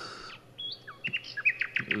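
A small bird singing: a few short whistled chirps from about half a second in, then a quick trill of rapidly repeated short notes near the end.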